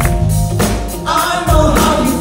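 A live band playing: drums keep a steady beat of about two strokes a second under keyboards, and a male lead singer's voice carries the melody in the second half.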